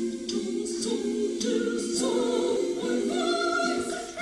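Choral singing: several voices holding long notes together in harmony, with a new chord about halfway through.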